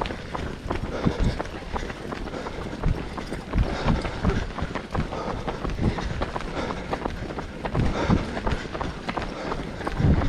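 Footsteps of a group of runners jogging on a tarmac path, heard from among them as a steady patter of irregular footfalls.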